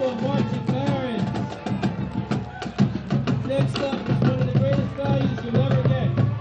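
A high school marching band playing while marching: brass and saxophones carrying the tune over bass drums and snare drums keeping a steady beat.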